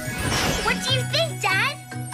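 A twinkling, jingling cartoon magic sound effect over background music, with several quick swooping tones.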